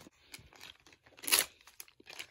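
Clear adhesive tape being handled on a paper cut-out: light crinkling and small ticks, then one short loud rip of tape about a second and a half in.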